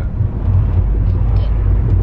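Steady low rumble of a car's engine and tyres heard inside the cabin while driving.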